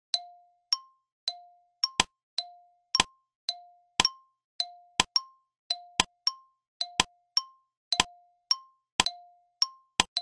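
Countdown timer sound effect: a ticking that alternates between a lower and a higher pip about twice a second. From about two seconds in, a sharper click also falls on every second.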